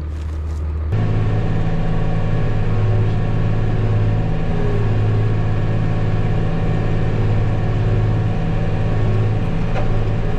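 Tractor engine and pull-type forage harvester running steadily while chopping a barley swath, heard inside the tractor cab as an even low drone that comes in about a second in.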